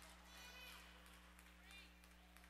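Near silence: church room tone with a steady low hum, and faint voices in the background about half a second in and again near the end.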